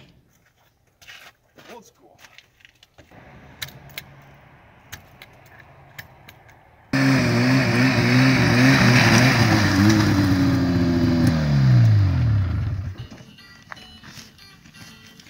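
Faint clicks and a low hum, then about seven seconds in an old Yamaha Phazer snowmobile's two-stroke engine comes in loud, running on the throttle with a wavering pitch. Near the end the pitch falls away as the sled slows, and the sound drops off.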